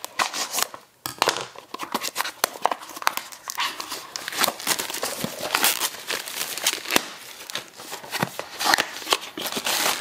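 Scissors snipping open a small cardboard box, then thin plastic packaging crinkling and rustling with irregular crackles as it is pulled off a massager roller head.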